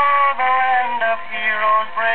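A 1942 country-western 78 rpm shellac record playing on a turntable: a melody of held notes stepping from pitch to pitch over instrumental backing.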